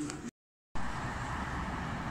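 Steady road traffic noise, an even rushing hum of passing cars, starting after a brief dead silence about half a second in.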